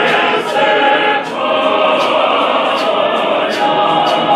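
A church congregation singing together as a choir of many voices, over a regular sharp beat struck about two to three times a second.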